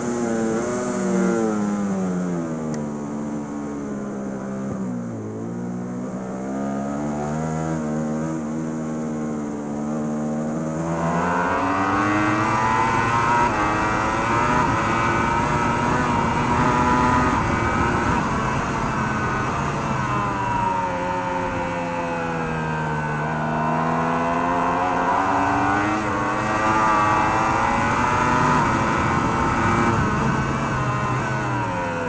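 Superbike engines at race pace heard from an onboard camera: a Ducati Panigale V4 R's V4, then after a cut about 11 s in, a Yamaha R1's inline-four. In each, the engine note falls as the rider brakes and shifts down into a corner, then climbs again as he accelerates out, with wind rush over the bike.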